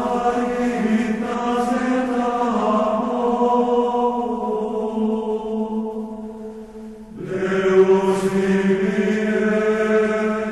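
Sung religious chant in long held notes. One phrase fades out about six to seven seconds in and a new phrase starts right after.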